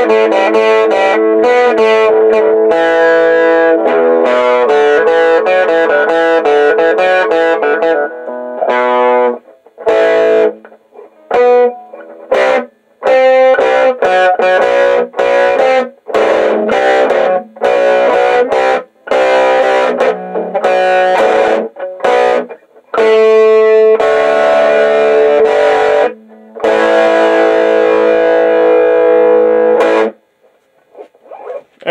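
Homemade electric guitar with a single-coil Strat-type pickup and an Ibanez neck, played through an amplifier for a sound check of the finished build, its fret buzz cured. Ringing chords for the first several seconds, then a stretch of short, choppy chords with brief silences between them, then ringing chords again near the end.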